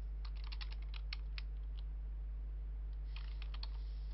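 Computer keyboard keystrokes: a quick run of about a dozen keys in the first second and a half, then a shorter run about three seconds in, as a word is typed. A steady low hum lies underneath.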